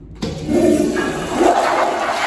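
Eljer toilet with a wall-mounted flushometer valve flushing: a sudden rush of water starts a fraction of a second in as the handle is pushed, then builds to a loud, steady rushing.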